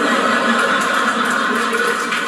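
Stand-up comedy audience laughing and clapping, a steady dense wash of crowd noise.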